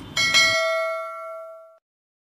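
A click, then a bell-like notification ding sound effect struck twice in quick succession, ringing out and fading over about a second and a half before cutting off.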